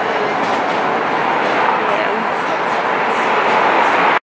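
Loud, steady roar of downtown street noise, swelling slightly near the end.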